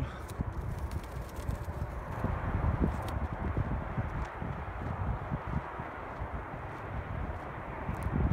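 Wind rumbling and buffeting across a phone microphone outdoors, an uneven rushing noise with low thumps and some rustling.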